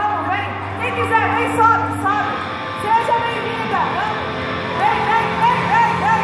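Several voices shout and call out together through the stage PA, with rising-and-falling cries every half second or so. Steady low tones from the amplified stage run underneath.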